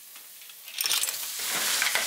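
Garlic sizzling faintly in hot oil, then about a second in a batch of Manila clams goes into the stainless steel wok: a clatter of shells on the metal and a sudden loud sizzle that keeps going as they are stirred.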